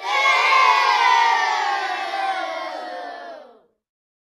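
A crowd of many voices shouting together, starting suddenly, drifting slightly lower in pitch as it fades, and stopping after about three and a half seconds.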